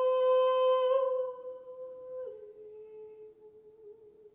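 A mezzo-soprano's voice holds one long, sustained note. About two seconds in it steps down a little to a slightly lower note and fades away.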